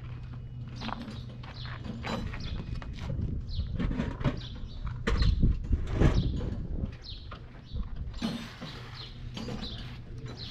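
Open-air workshop ambience: a steady low hum with scattered knocks and clatter, birds chirping, and a louder run of low thumps about halfway through.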